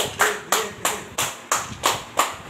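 A few people clapping their hands together in a steady rhythm, about three claps a second.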